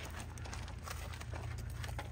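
Footsteps on gravel, a few irregular crunches over a steady low rumble.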